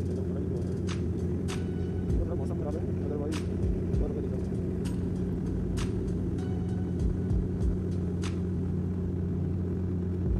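Cabin drone of a Bombardier Dash 8 Q400 turboprop airliner in flight: a steady low two-note hum from the propellers over a constant rumble, with faint clicks now and then.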